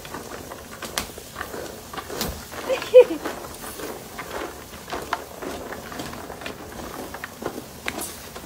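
Cashew nuts roasting in their shells in a pan over an open wood fire, the burning shells crackling and popping irregularly.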